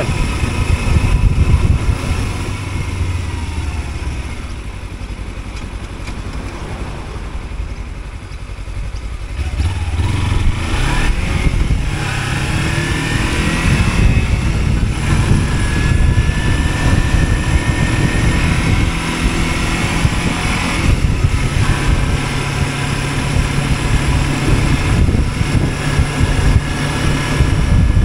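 Kawasaki Versys-X 300 parallel-twin motorcycle engine, quieter while slowing and idling at a stop, then pulling away about ten seconds in with a rising engine note, and running on under way with wind rushing over the microphone.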